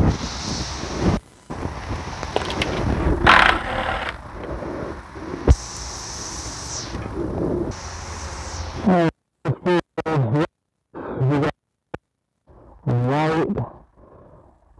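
A cordless drill runs briefly on engine-bay fasteners over a steady high-pitched cicada drone, with a sharp click a few seconds in. From about the middle on, the recording keeps dropping out, chopping short bits of a man's voice: a microphone fault that is put down to low batteries.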